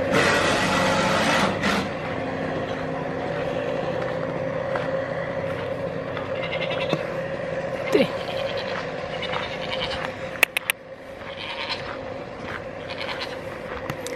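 A loud, steady machine drone holding one constant pitch, with a goat bleating once about eight seconds in and a couple of sharp clicks a little later.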